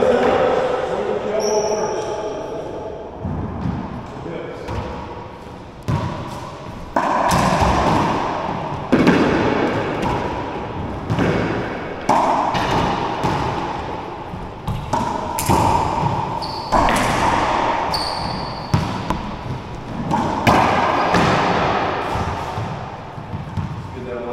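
Racquetball rally in an enclosed court: the rubber ball cracks off racquets and the walls at irregular intervals a second or two apart, each hit ringing on in a long echo. A few short high squeaks from sneakers on the wooden floor come in between.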